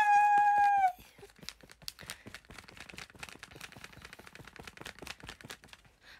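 A drawn-out 'yeah' on one held pitch ends about a second in. After it come faint, irregular crackling clicks of a plastic candy wrapper being handled.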